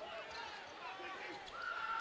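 A basketball dribbling on a hardwood court under faint arena crowd noise. A thin steady tone comes in near the end.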